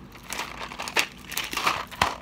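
Plastic candy packaging crinkling and crumpling in the hands as it is opened, in irregular bursts with a louder crackle about a second in and another near the end.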